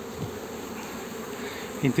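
Honeybees buzzing in a steady hum around an opened hive box. A man's voice begins right at the end.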